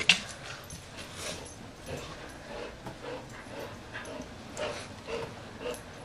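A dog whimpering in short repeated bursts, about two a second, after a sharp knock at the very start.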